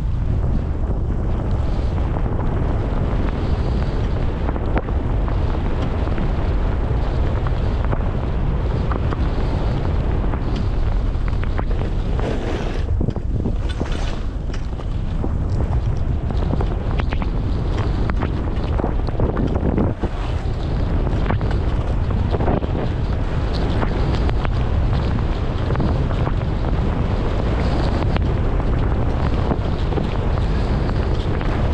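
Wind buffeting the camera's microphone during a downhill ski run, over the steady hiss and scrape of skis sliding on snow.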